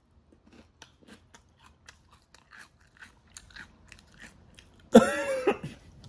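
Close-up chewing of a mouthful of Hot Cheetos: a rapid, irregular run of crisp crunches. Near the end, a sudden loud burst of voice breaks out through the full mouth.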